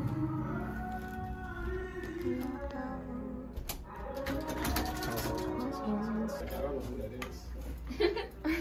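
Several people's voices chattering indistinctly in a small room, with music in the background and a few sharp clicks from about halfway through.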